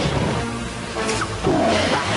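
Cartoon big cats roaring and snarling over dramatic chase music, with the loudest roar about one and a half seconds in.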